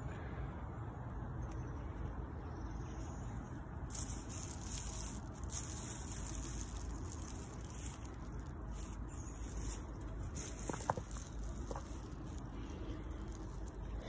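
Faint rustling of footsteps and handling through low leafy ground plants, over a steady outdoor hiss, with two brief high chirps about eleven seconds in.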